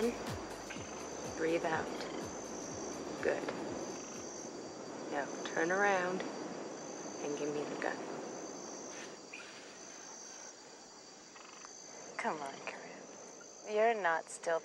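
Insects chirring in a steady high pulsed trill, with a few short animal calls scattered through it; the strongest call, about six seconds in, wavers in pitch.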